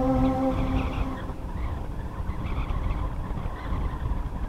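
A held chord of the background music dies away within the first second, leaving a steady low rumbling noise bed with no clear pitch or rhythm.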